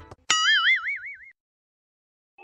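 Cartoon 'boing' sound effect: a single pitched tone that wobbles up and down several times and fades out after about a second, just after a short click.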